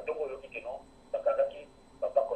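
Speech heard over a telephone line: a voice talking in short phrases, sounding thin and tinny.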